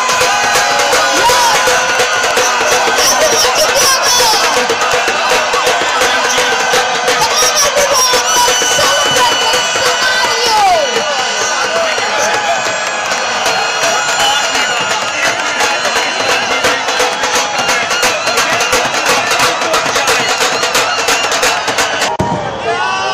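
A celebrating crowd cheering, shouting and clapping over loud music with a drum beat.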